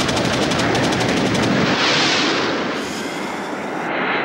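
Rapid automatic gunfire, about ten shots a second, cutting in suddenly, then a loud rushing noise that swells about two seconds in and eases off: battle sound.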